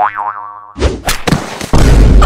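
Cartoon comedy sound effects: a springy, wobbling boing at the start, then from under a second in a loud noisy crash-like burst that grows louder near the end.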